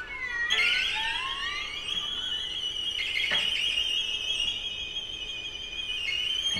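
String quartet playing slow upward glissandi that merge into a single high, held tone.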